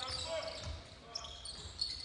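A basketball dribbled on a hardwood court, a few low bounces, with short high-pitched sneaker squeaks.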